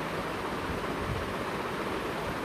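Steady background hiss with no speech: the recording's own noise floor during a pause in the narration.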